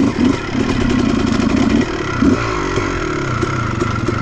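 Honda CR250 two-stroke dirt bike engine running under throttle, with a sharp rise in revs about two seconds in and then the revs falling away.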